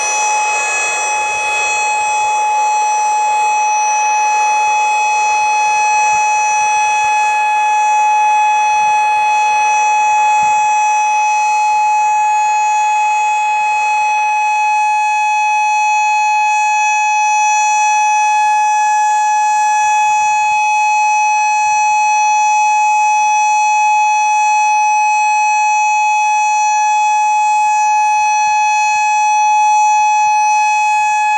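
Federal Signal Modulator 6024 electronic outdoor warning siren sounding one unbroken steady tone. A hiss runs under the tone and fades about fourteen seconds in; the uploader takes the extra hiss and weak volume as a sign that some of its drivers may be bad.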